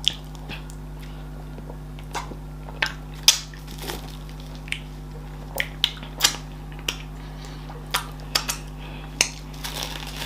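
Mouth sounds of eating fufu and okra soup by hand: short wet smacks, slurps and finger-licking, about a dozen scattered irregularly.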